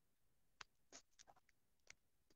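Near silence, broken by a few faint, brief clicks and ticks.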